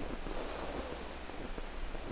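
A man drawing a deep breath in through the nose, heard as a faint hiss during the first second, over the steady hiss and low hum of an old 16 mm film soundtrack.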